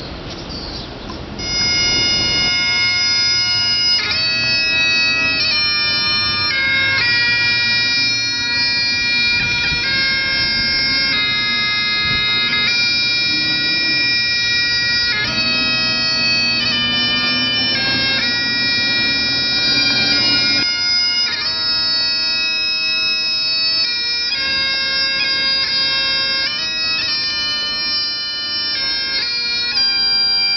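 Bagpipes playing a tune over steady drones, starting about a second and a half in and running on without a break.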